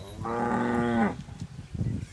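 A Khillar calf moos once: a single call of about a second that drops in pitch as it ends.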